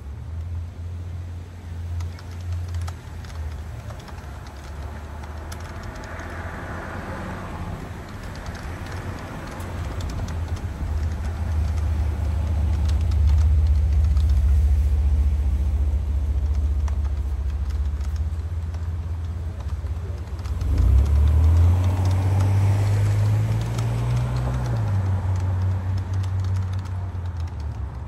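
Road traffic going by: a low vehicle rumble swells twice, and the second pass, about three-quarters of the way in, has an engine note that rises and then drops. Light clicking of typing on a keyboard runs underneath.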